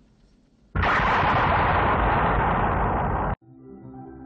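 A loud explosion-like crash film sound effect, probably the thrown device striking the rocks below the cliff. It starts suddenly, holds as a dense roar for about two and a half seconds, and cuts off abruptly. Soft ambient music with long ringing tones starts near the end.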